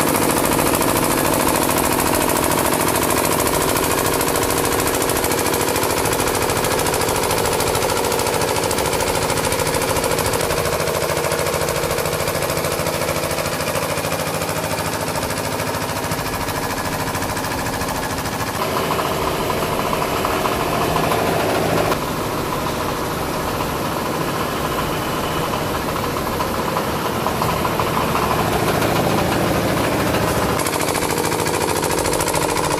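Small engine of a truck-mounted power sprayer pump running steadily with a rapid pulsing beat as it pumps sanitizer out through a spray hose.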